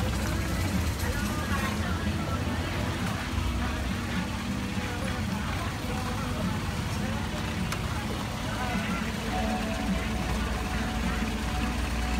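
Long-tail boat engine running steadily as a low drone, with indistinct voices of people chatting over it.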